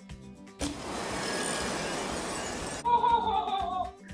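Comedy sound effect after a joke's punchline: a loud burst of noise lasting about two seconds, then a falling tone near the end, over quiet background music.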